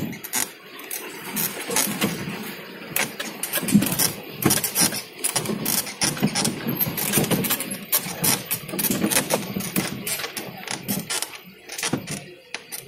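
A vehicle's engine running as it drives slowly over a rough, rutted dirt track, with irregular knocks and rattles from the body and suspension jolting over the bumps.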